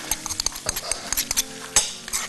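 Chicken livers sizzling in butter in a wok, with clicks and knocks of a wooden spoon and a small bowl against the pan as a spice mix is tipped in and stirred. A sharp knock near the end is the loudest sound.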